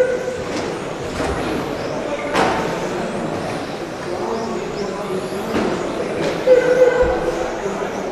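Electric RC touring cars racing, their brushless 13.5-turn motors whining in passes over a steady background of tyre and hall noise, with a few sharp knocks.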